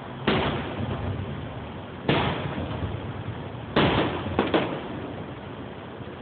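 Fireworks display: aerial shells bursting overhead with loud bangs that each rumble away. The first comes about a third of a second in and the next about two seconds in, then three follow in quick succession near the middle.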